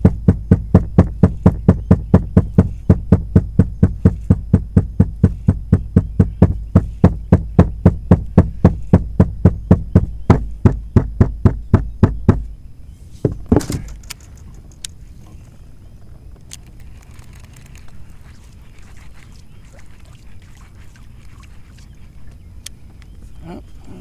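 A wooden stick thumped steadily against the boat's deck, about four dull knocks a second, to draw stripers up under the boat. The thumping stops about twelve seconds in, followed about a second later by one louder knock.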